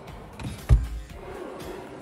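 A wooden cabinet drawer sliding shut, closing with a low thump about a second in, followed by the drawer below being pulled open.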